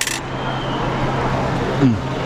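A short, sharp clink of cutlery on a metal plate right at the start, then a steady low hum of street background. A brief falling murmur of a voice comes near the end.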